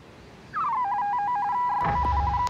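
Electronic computer bleeping: a tone slides down in pitch, then flicks rapidly back and forth between two notes, like a machine processing. A low rumble comes in near the end.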